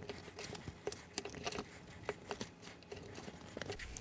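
Faint, irregular clicks and taps of a thumbtack being pressed and wiggled through a folded stack of printer paper, with hands handling the pages.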